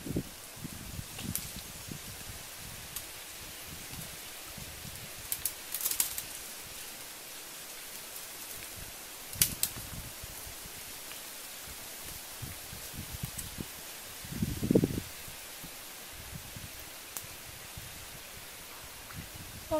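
Leaves and branches rustling as a person climbs and shifts about in a tree. There are a few sharp snaps of twigs and a louder low rustle about three-quarters of the way through.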